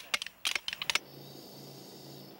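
A rapid, irregular run of sharp clicks stops about a second in, leaving a faint steady hum.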